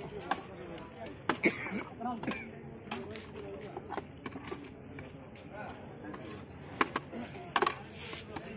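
Metal ladles and spoons knocking against steel cooking pots as food is served, a scatter of sharp clanks, louder ones about a second and a half in and twice near the end, over background talk.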